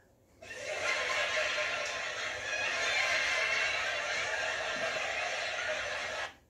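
Recorded crowd laughter, a canned studio-audience laugh track, starting about half a second in and holding steady before cutting off at the end.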